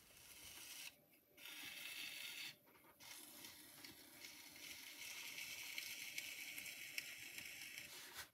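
Metal kidney scraping over the clay bottom of a jar turning on a pottery wheel, compressing and polishing the base: a faint, steady hiss, broken twice in the first three seconds when the kidney is lifted.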